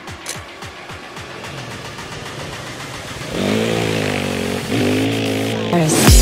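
Motorcycle engine revving sound effect over intro music, coming in loud about three seconds in and dipping briefly before rising again.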